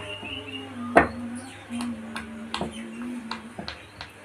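Background music with long held notes, over which come several sharp pops, the loudest at the start and about a second in, with fainter ones through the rest: silicone pop-it bubbles being pressed.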